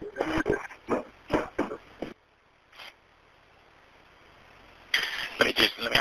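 Indistinct voices over a telephone line, broken by about three seconds of near silence in the middle.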